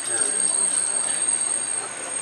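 Backlot tour tram rolling along, an even rumble with a steady high-pitched whine over it; a voice is briefly heard at the start.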